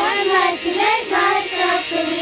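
Song: a child's voice singing a melody over backing music, ending on a long held note.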